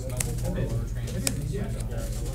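Faint murmur of voices over a steady low hum, with two short taps about a second apart as trading cards are laid down on a playmat.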